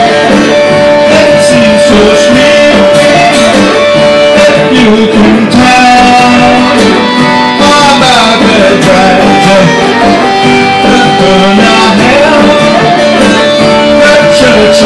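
A small band playing a song live on two acoustic guitars and an electric guitar, with a man singing at a steady, loud level.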